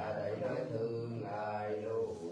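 A man chanting then ritual verses in a low voice, the tones held and sliding gently from one to the next without a break.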